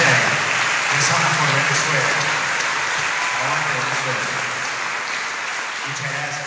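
Congregation applauding steadily in a large hall, fading near the end, with a man's voice speaking over it into a microphone.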